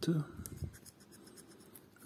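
A coin scraping the coating off a paper scratch-off lottery ticket in short, quick strokes: a run of light dry scratches.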